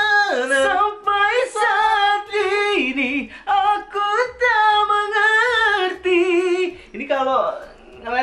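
Singing: a high voice holding long notes with a wide vibrato, moving from note to note in a slow melodic line, with a brief break near the end.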